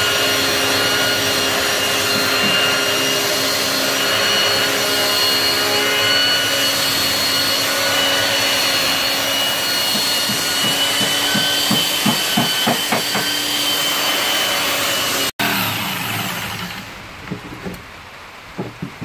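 Electric belt sander running on a wooden plank: a loud, steady motor whine over the rasp of the belt. It cuts off suddenly about fifteen seconds in, leaving quieter background with a few light knocks.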